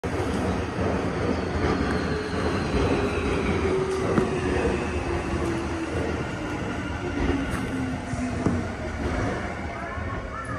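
Tobu 50000-series electric train running, heard from inside the driver's cab: a steady running rumble with a whine that falls slowly in pitch over several seconds. Two sharp knocks come through, about four and eight and a half seconds in.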